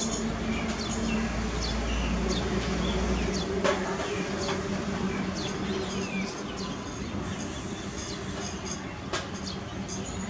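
Outdoor background of birds chirping: many short, high chirps falling in pitch, scattered throughout, over a steady low hum. A deeper rumble cuts off about three seconds in.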